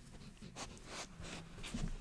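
A pet dog moving close to the microphone, making a few short noisy sounds about half a second apart.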